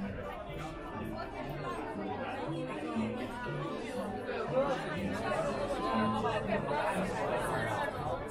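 Many people talking at once in a crowd, over background music with a line of low sustained notes.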